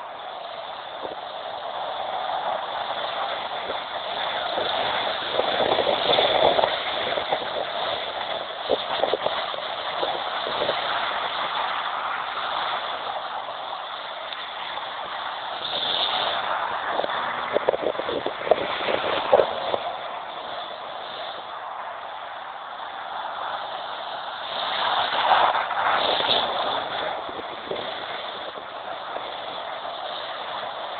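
BMW 325iX's straight-six engine running and revving as the car slides around on snow, heard through a tinny camera microphone with no low end. The sound swells and fades several times as the car comes near and moves away, with a few sharp clicks during the loudest pass.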